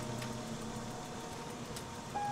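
Quiet stretch of a film soundtrack: an even hiss of background ambience, with the low held notes of the music score fading away in the first second.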